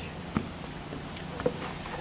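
A few soft, short knocks over a low steady background, one about a third of a second in and another about a second and a half in: small handling or footstep sounds while the foam spraying is paused.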